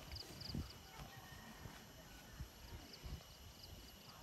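Quiet outdoor ambience: a faint, high chirp repeating about three times a second fades away early and returns in the second half, over a few soft low thumps.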